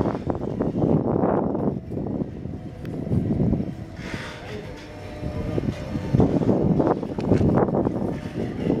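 Wind buffeting the microphone in uneven gusts, easing off for a couple of seconds in the middle.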